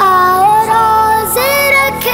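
A boy singing an Urdu nasheed without words breaking the line, holding three long notes and sliding between them.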